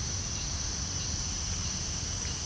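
Insects chirring in a continuous, steady high-pitched drone, with a low steady rumble underneath.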